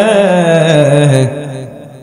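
A man's voice intoning an Islamic sermon (waz) in a melodic, chanted style through an amplified microphone, holding one long wavering note. The note trails off over the last second or so.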